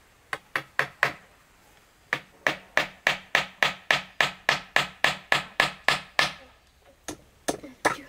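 A hammer driving nails into a wooden board: four blows, a short pause, then a fast even run of about four blows a second, each with a brief metallic ring. After another short pause a few more blows come near the end.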